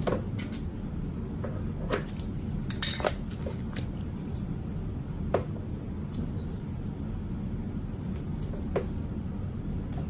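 Scattered sharp clicks and taps from scissors and bag pieces being handled on a sewing table, over a steady low hum.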